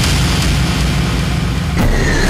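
Low, steady rumble of a dramatic background-score sound effect, cut off by a sudden hit near the end.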